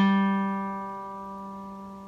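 Open third (G) string of a Crafter acoustic guitar plucked once, the single note ringing on and fading slowly.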